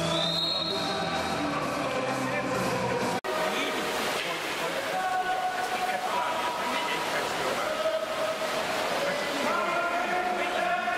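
Voices chanting in long held notes that change pitch every second or so, with a sudden break about three seconds in.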